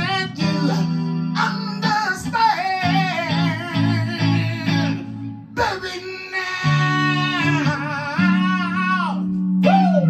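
A man singing wordless, wavering vocal runs over his own electric guitar chords, in two long phrases with a short break just past halfway.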